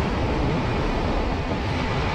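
Steady riding noise from a KYMCO KRV 180 scooter cruising at constant speed: wind rushing over the microphone, with engine and tyre noise underneath.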